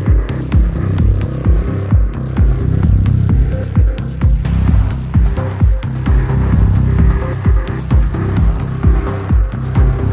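Downtempo psychill electronic music with a steady kick-drum beat over a deep, sustained bass line.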